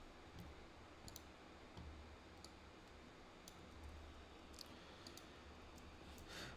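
Near silence with a few faint, scattered clicks of computer keys as a password is entered into a terminal text editor.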